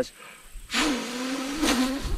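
A man blowing a buzzing gust of breath through his lips into his hand at the microphone, a rushing noise with a low wavering buzz under it, starting a little under a second in, in imitation of wind noise on the mic.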